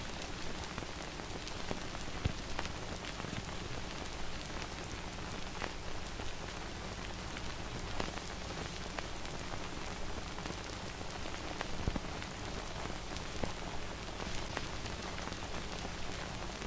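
Steady hiss with scattered crackles and clicks over a faint low hum, a noise bed with no music or voice.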